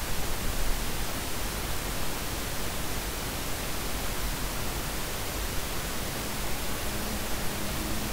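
Steady hiss of background noise on the narration recording, with no other sound.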